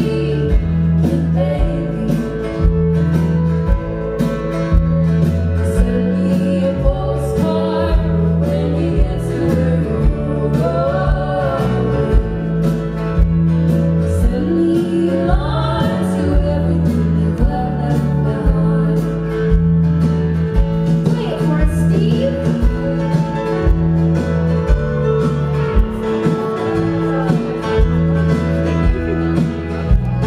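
A live band plays a song while a woman sings, over electric bass, guitar and a steady drum beat.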